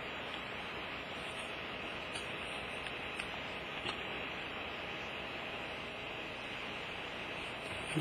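Steady hiss of background recording noise, with a few faint ticks about two to four seconds in.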